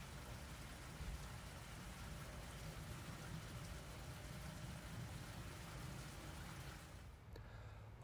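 Faint steady outdoor background noise with a low rumble and no distinct tones. It drops quieter about seven seconds in.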